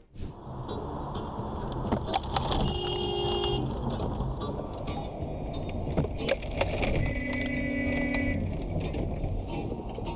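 Road and wind noise inside a moving car on a wet road, with sharp cracks about two and six seconds in. Two steady held tones of about a second each sound about three seconds in and again near the eight-second mark.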